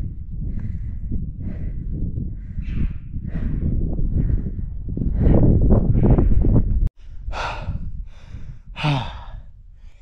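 A man breathing hard and panting, about one breath a second, from the exertion of a steep rocky climb. Wind rumbles on the microphone beneath the breaths, loudest just before a brief cut-out about seven seconds in.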